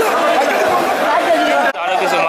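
Men talking loudly over one another, a crowd's chatter with one man's voice to the fore. The sound drops out briefly near the end.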